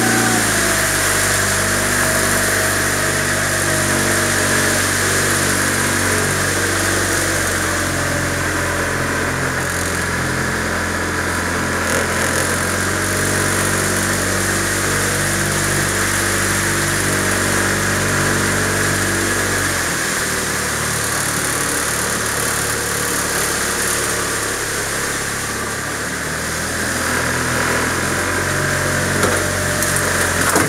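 Small boat's motor running at low speed. Its pitch drops just after the start and shifts again about two-thirds of the way through.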